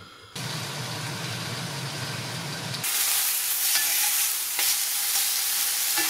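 Ox cheeks sizzling as they sear in oil in a cast iron casserole, with a low steady hum under the first few seconds; the sizzling grows louder about three seconds in.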